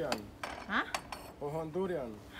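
Terracotta flowerpots clinking against each other as they are lifted from a stack: several sharp clay-on-clay knocks with a short ring.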